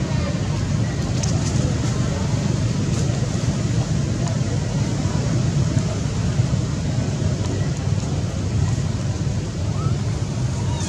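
Steady low rumbling background noise outdoors, with no distinct events standing out.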